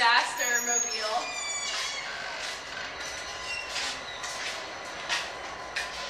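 Steady outdoor rumble and hiss from a CSX freight train on the tracks beyond the parking lot. A brief high squeal comes about half a second to a second and a half in.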